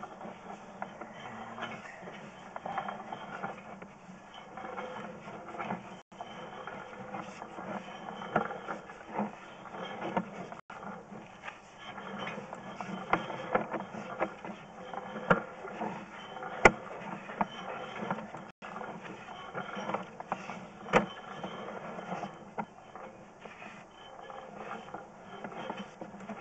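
Sewer inspection camera on its push rod being fed down a concrete sewer line: a steady noise with scattered sharp clicks and knocks, the loudest about two-thirds of the way through.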